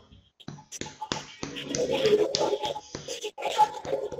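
Fingers tapping on a man's chest over the heart in clinical percussion, a quick irregular series of dull taps: the dull (maciço) note of a solid organ underneath.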